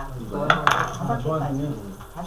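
Two sharp clinks of a hard object, about a quarter second apart, the second ringing briefly, over low talk.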